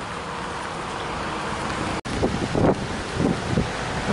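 Steady rushing noise that cuts out abruptly about halfway through, then uneven gusts of wind buffeting the microphone.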